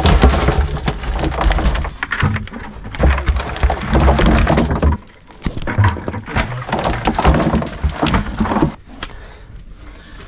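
Hand-digging in a dirt-and-rock pit: dirt and stones scraped up and dropped into a plastic bucket, a run of irregular scrapes, knocks and clatters. There is a short pause about five seconds in, and it is quieter near the end.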